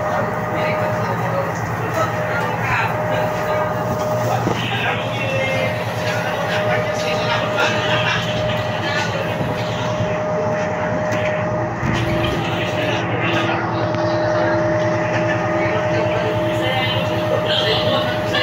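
Steady drone of a ship's machinery, with low humming tones and a higher steady whine, under rushing wind and sea noise. People laugh at the start, and voices come and go over it.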